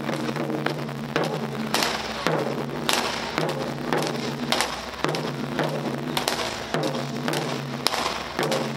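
Ensemble of barrel-shaped Japanese taiko drums struck with wooden bachi sticks, playing a loud rhythmic pattern of strikes, some hits landing together, accented with louder single blows.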